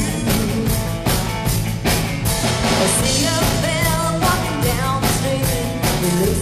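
Live cover band playing a rock-style song with a woman singing lead, over a steady drum-kit beat and bass.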